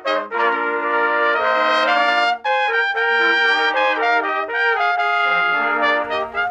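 A trumpet ensemble of six players playing a slow chordal piece in harmony, sustained notes moving together from chord to chord, with a brief break about two and a half seconds in.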